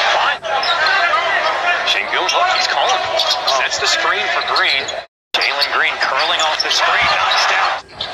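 Basketball game sound in an arena: voices and crowd noise, with a basketball bouncing on the hardwood court. The sound drops out completely for a moment about five seconds in.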